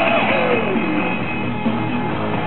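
Loud dance music from a DJ set played over a nightclub sound system, with a steady beat and a line that bends up and down in pitch.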